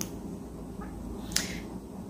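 A pause in speech: faint steady room noise, with a single short, sharp click about a second and a half in.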